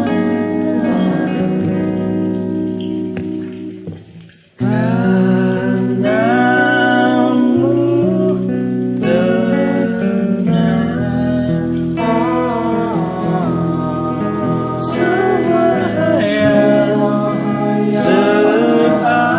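Acoustic cover song: guitar accompaniment under a sung melody. The music fades almost to nothing about four seconds in and breaks off for about half a second, then comes back in at full level.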